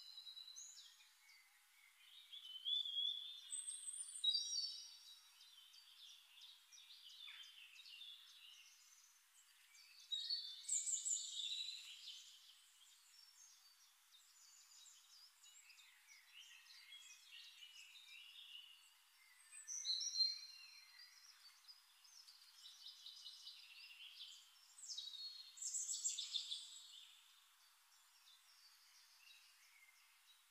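Faint birdsong: varied high chirps and trills from several birds, rising into four louder bouts with quieter chirping between.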